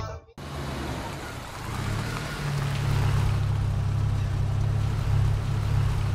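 Car engine and road noise: a low steady rumble with a hiss over it, building up about two seconds in and then holding level.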